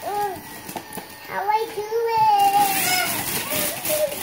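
A small child's voice in a long, wavering vocal sound, with wrapping paper rustling and tearing in the second half.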